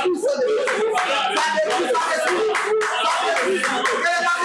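Prayer voices raised aloud together, several at once, with hand clapping throughout.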